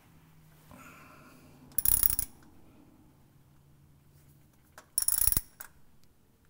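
Craftsman ratcheting box-end wrench clicking in two short runs, each about half a second, as the transfer case's threaded pipe plug is snugged down.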